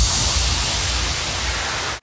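A loud hiss of white noise, like static, starting just as the music's beat stops, easing slightly, then cutting off suddenly at the cut back to the talking shot: an edited transition sound effect.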